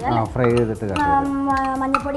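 A woman's voice, with one syllable held steady for about a second in the second half.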